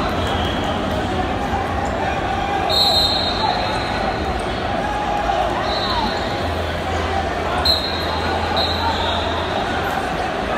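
Steady din of voices and shouting in a large wrestling hall, with short referee whistle blasts from the mats about three seconds in, around six seconds, and twice near the end.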